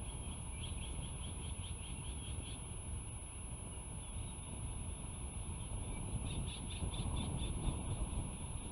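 Bald eagles calling at the nest: a run of rapid, high chirping notes, about four a second, in the first couple of seconds, and another run near the end. Under it is a steady low rumble of wind on the microphone.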